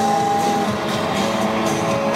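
Rock band playing live over an arena sound system, with a note held for about the first half-second.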